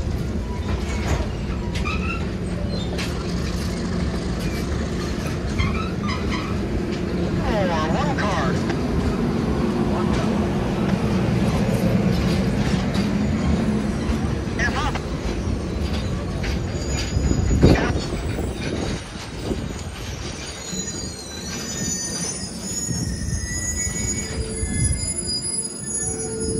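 Passenger coaches rolling slowly past on the rails, wheels rumbling and squealing against the track. There is a sharp bang a little past halfway. After it the rumble eases and high-pitched wheel or brake squeals take over.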